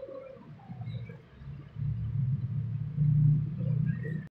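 A low rumble that grows much louder about two seconds in.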